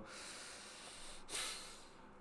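A man's short, faint breath out through the nose close to the microphone, about a second and a half in, over a low steady hiss.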